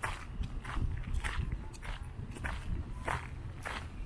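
Footsteps on a desert dirt trail, about two steps a second, each a short scuffing crunch, over a steady low rumble.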